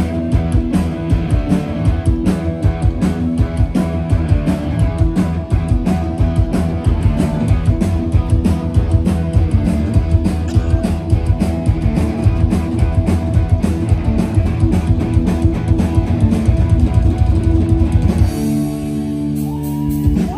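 Punk rock band playing live on an open-air stage: distorted electric guitars, bass and fast drums, with no singing. Near the end the drums drop out and a held guitar chord rings on.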